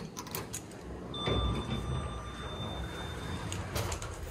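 KONE MonoSpace lift's automatic sliding doors working: a few clicks, a low rumble and a steady high whine lasting about two seconds.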